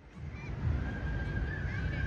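Outdoor ambience fading in, dominated by a fluctuating low rumble of wind on the microphone. About a second in, a high held call or whistle-like tone comes in over it.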